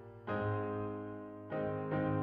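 Piano playing slow sustained chords: one struck about a quarter second in and another about a second and a half in, each left to ring and fade.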